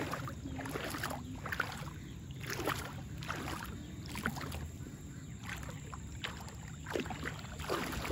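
Shallow water sloshing and splashing in irregular bursts as someone wades through it, over a steady low rumble.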